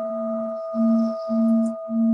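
Tibetan singing bowl ringing on after a single strike: a steady clear tone with a higher overtone, over a low hum that swells and fades about twice a second.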